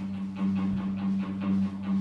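Electric guitar intro played live through an amplifier: picked notes repeating a few times a second over a steady held low note, with one soft low thump a little before the middle.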